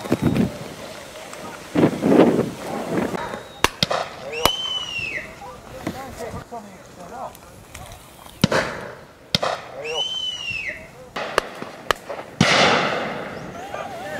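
Shotgun reports from a line of guns shooting driven pheasants: about half a dozen sharp shots spread irregularly, one pair in quick succession, over steady wind noise and distant voices.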